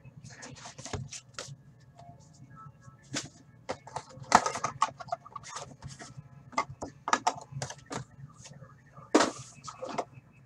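Cardboard trading-card box and plastic-wrapped card packs being handled and opened: irregular crinkling, rustling and light knocks, loudest about four seconds in and again near the end.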